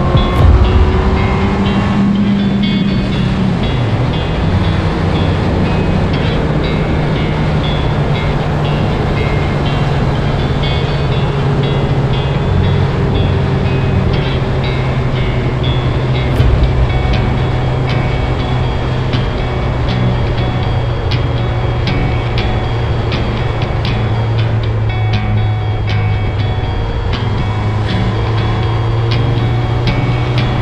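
Suzuki Hayabusa inline-four engine running under way, with wind noise on the microphone. Its pitch shifts near the start, then holds steady at cruising revs.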